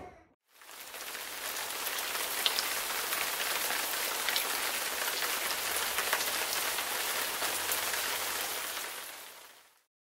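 Steady rain falling: an even hiss of many small drops that fades in just under a second in and fades out shortly before the end.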